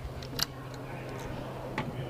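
Quiet room tone of the venue with a steady low hum, broken by two brief faint clicks about half a second in and near the end.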